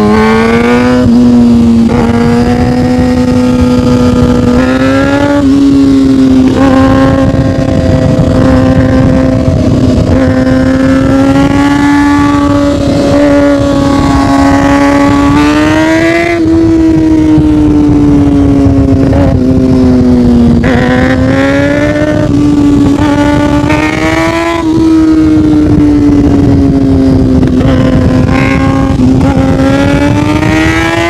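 2013 Kawasaki Ninja ZX-6R 636's inline-four engine running through an M4 aftermarket exhaust while riding. Its note climbs in pitch and eases off again several times as the throttle opens and closes, with short upward sweeps about five, sixteen and twenty-four seconds in.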